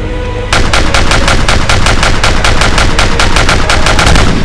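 A burst of rapid automatic gunfire, about eight shots a second, starting about half a second in and running on without a break.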